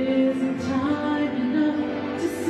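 Female vocalist singing a worship song in long held notes, with keyboard accompaniment.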